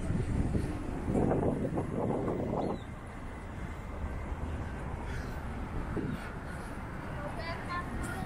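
Downtown street ambience: a steady low hum of traffic with people's voices in the background, and a louder stretch lasting under two seconds about a second in.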